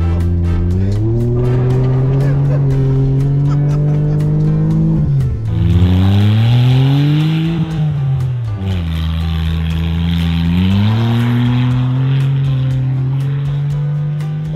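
Lifted Smart car's small engine revving hard, its pitch climbing and then dropping suddenly several times as the automatic gearbox shifts up on its own. Through the middle stretch there is a steady rush of tyres spinning through snow.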